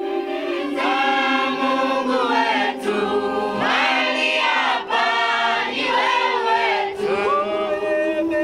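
Background music: a choir of voices singing over a steady sustained chord, the voices coming in about a second in.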